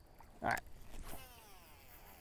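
A cast: a brief swish, then the baitcasting reel's spool whirring as line pays out, its whine falling steadily in pitch as the spool slows.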